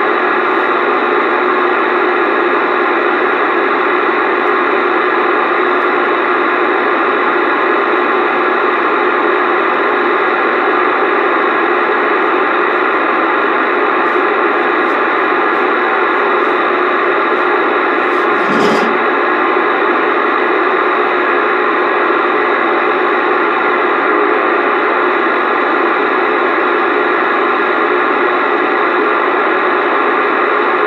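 CB radio receiver on AM putting out steady, loud static hiss, with no station coming through. There is one brief crackle a little past halfway.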